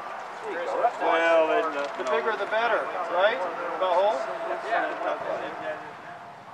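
Indistinct voices of people talking, with no words clear enough to make out.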